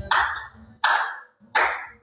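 Three slow, evenly spaced hand claps, about one every three-quarters of a second, each ringing briefly in a large hall.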